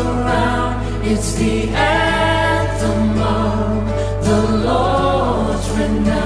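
Contemporary gospel worship song: a group of voices singing long, held notes in unison and harmony over instrumental accompaniment with a steady low bass.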